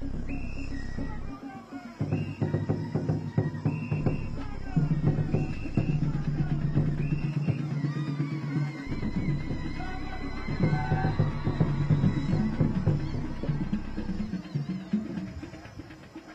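Traditional drums beaten in a fast, steady rhythm with voices singing along. The drumming starts about two seconds in and dies away near the end.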